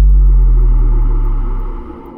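A deep cinematic boom sound effect that hits suddenly and fades away over about two seconds, with a fainter airy drone above it that carries on, the audio of an animated logo outro.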